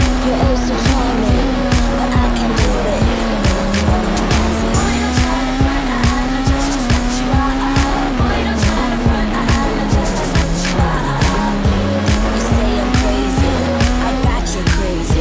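Peugeot 207 S2000 rally car's two-litre four-cylinder engine running hard at high revs, its pitch rising and dipping smoothly as the driver works the throttle. Music with a steady beat plays over it.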